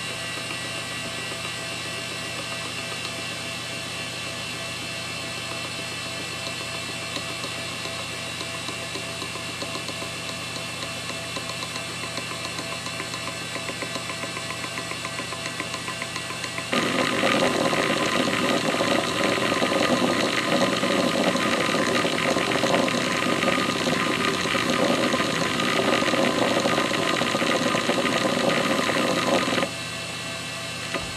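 Western Digital WD101AA 10 GB IDE hard drive spinning with a steady whine and faint occasional ticks. About halfway through, its heads start seeking rapidly: a loud, continuous rattling chatter that stops shortly before the end.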